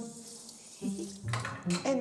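Water spraying from a handheld shower head onto a small dog in a grooming tub, a faint steady hiss over background music. A voice starts up near the end.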